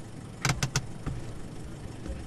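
Inside a parked car's cabin: a steady low rumble, with three quick clicks in a row about half a second in.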